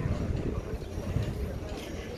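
Footsteps on stone paving, a few steps about half a second apart, over a low rumble and voices in the background.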